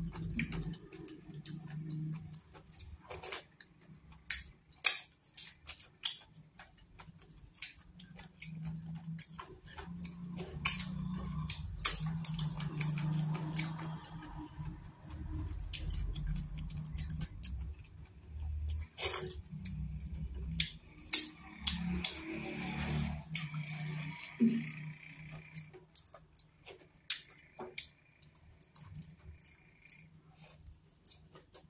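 Close-miked eating: fufu with afang soup being chewed and smacked, with many sharp, wet mouth clicks scattered irregularly over a low, uneven murmur.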